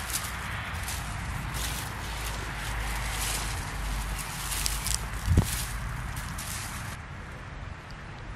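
A bare hand scratching and digging through dry, stony garden soil and dead potato foliage: a run of crumbly scrapes and rustles that stops shortly before the end, with one dull thump about five seconds in.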